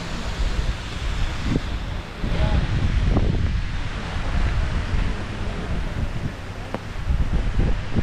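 Gusty wind buffeting the microphone, a low rumble that swells and fades with each gust.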